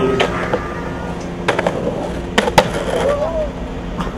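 Skateboard deck and wheels striking concrete pavement: a series of sharp clacks and knocks from tricks and landings, the loudest two close together about two and a half seconds in.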